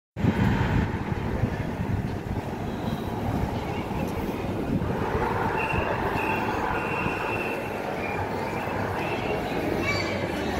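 Busy city pedestrian-street ambience: a steady rumble with the voices of passers-by, and a thin high squeal that comes and goes in the second half.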